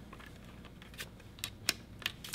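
A few light clicks from hands handling a small plastic electrostimulator box (Pantheon 6c.Pro), falling in the second half, the sharpest about three quarters of the way through, over faint room hiss.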